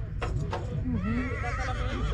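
A stallion neighing: a warbling whinny of about a second, beginning about a second in, after two short knocks.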